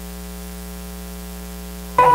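Steady electrical mains hum, a buzz with many even overtones, under a constant hiss of static from the recording's sound system.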